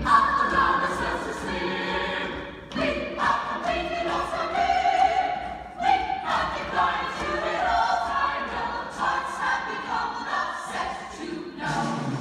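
A stage chorus singing a musical-theatre ensemble number over instrumental accompaniment, with short breaks between phrases about three and six seconds in.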